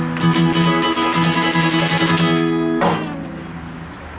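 Acoustic guitar strummed fast on one ringing chord, then a last strum about three seconds in that is left to ring and fade.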